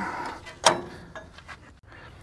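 Metal parts of a tractor's three-point hitch linkage being handled and adjusted by hand: a short scrape, then one sharp clank about two-thirds of a second in, followed by a couple of light clicks.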